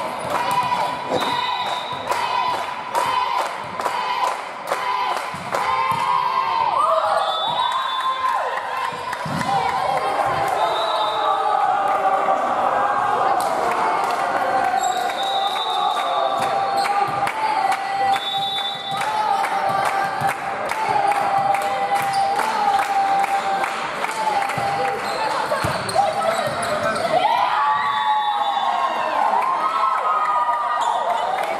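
Indoor volleyball play in a reverberant sports hall: many sharp knocks of a volleyball being struck and bouncing on the wooden floor, densest in the first few seconds, with voices of players and spectators and a long steady tone through the middle.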